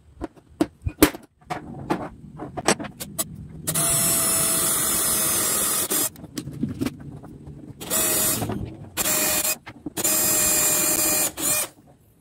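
Proman cordless drill boring into a small block of wood, run in four bursts: one of about two seconds, then three shorter ones, each starting and stopping abruptly. Before the first run come light clicks and knocks of handling the wood and a hand pin vise.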